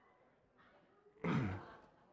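A man's single sigh, a breathy exhale falling in pitch, lasting about half a second a little past the middle of an otherwise near-silent moment.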